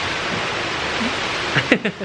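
A steady, even rushing noise, with a short laugh near the end, where the rushing noise drops away.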